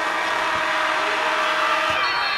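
Arena buzzer horn sounding one steady, pitched tone for nearly two seconds, cutting off just before the end, over a roaring basketball crowd.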